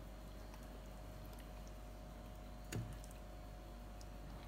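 Quiet handling sounds of marinated chicken pieces being set into a pressure cooker's metal inner pot, with one soft knock a little under three seconds in, over a faint steady hum.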